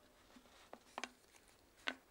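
Faint handling sounds of a rubber balloon being fitted over the mouth of a small bottle: three small clicks and rubs, the loudest near the end.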